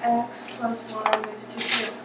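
Voices in a classroom with light clinks and rattles of small hard objects.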